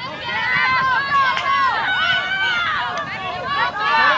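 Several high-pitched voices shouting and calling over one another, players and sideline spectators yelling during soccer play.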